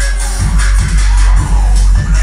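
Loud electronic hip-hop music played through a homemade slot-ported subwoofer box with a dual-voice-coil 250 W RMS woofer. A heavy, steady deep bass runs under a regular beat.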